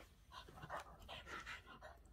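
Boston terrier panting in a quick series of faint, breathy puffs while holding a ball in its mouth.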